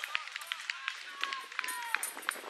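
Outdoor sports-field ambience: distant voices of players and spectators, with many short high chirps and a few falling whistle-like calls scattered throughout.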